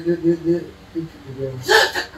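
A man's voice in short, clipped syllables, then a sharp, breathy exclamation near the end: speech that the recogniser did not write down.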